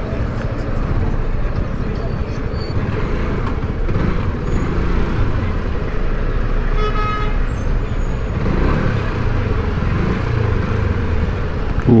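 Motorcycle riding slowly through city traffic, with a steady rush of wind and road noise over the microphone. A vehicle horn toots briefly about seven seconds in.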